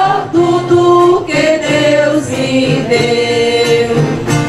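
A choir singing a hymn, holding long sustained notes that change pitch every second or so.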